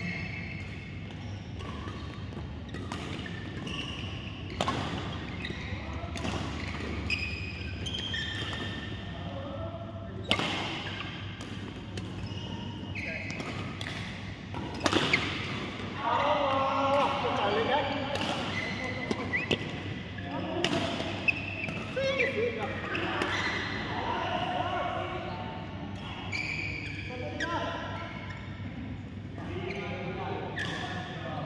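Badminton rackets striking the shuttlecock: a series of sharp, irregular hits in an echoing sports hall, with players' voices around them.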